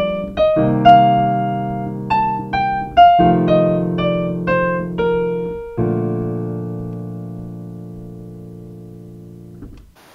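Kawai piano played softly, carefully and hesitantly: a right-hand line of single, somewhat random notes from the B-flat major scale over held left-hand chords, the way a beginner tinkers when first improvising. A last chord about six seconds in rings out and fades, then is released just before the end.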